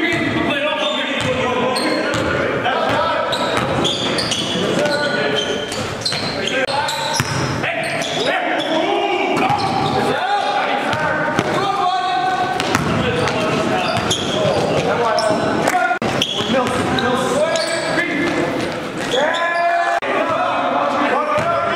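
Basketball game sound in a gym: a ball bouncing on the hardwood court again and again under indistinct, overlapping shouts and talk of players, all echoing in the hall.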